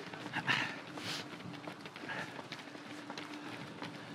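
Footfalls of a close pack of runners on a tarmac path, many quick, overlapping strikes with no even beat, over a faint steady hum.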